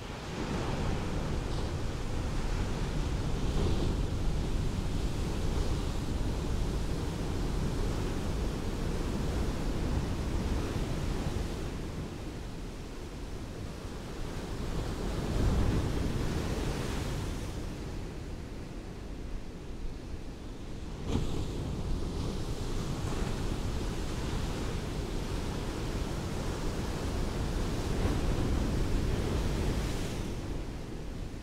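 Ocean surf washing onto a beach: a steady rush of breaking waves that swells and ebbs, loudest about halfway through and again near the end.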